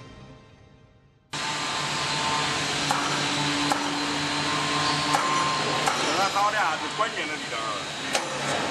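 Music fading out, then, from just over a second in, a sudden switch to loud, steady factory-hall noise: machinery hum and hiss with a few sharp metallic clicks.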